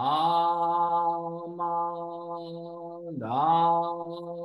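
A man chanting a Shin Buddhist sutra from a service book, drawing out long syllables on an almost level pitch. About three seconds in his voice dips and rises into the next syllable. His voice is hoarse, which he puts down to allergies, saying he sounded like a frog.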